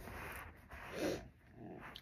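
A dog making a short, faint, muffled sound about a second in.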